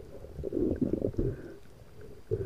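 Muffled low rumbling and knocks heard underwater through an action camera's waterproof housing as a speared grouper is handled on the spear shaft. The sounds are loudest in a cluster from about half a second to just past a second in.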